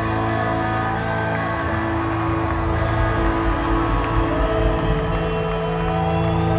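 A rock band playing live through a large venue PA, mainly electric guitars and bass. The guitars hold long notes that bend and slide in pitch over a steady bass.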